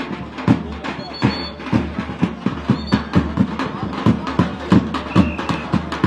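Davul bass drum beating a fast, steady rhythm of about four to five strokes a second, over voices, with a few brief high held tones between the beats.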